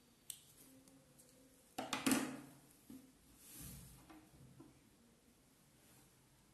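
A few faint clicks and rustles of hands handling cotton fabric and a plastic disposable lighter while the thread ends are singed, with a louder cluster of sharp clicks about two seconds in.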